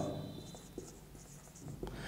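Marker writing on a whiteboard: a few faint, short scratches and taps of the pen strokes.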